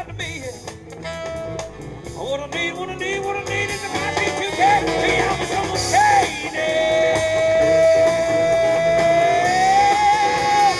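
Live band of electric guitars, drum kit and saxophone playing an instrumental passage that grows louder, with one long held high note through the last few seconds that bends up slightly near the end.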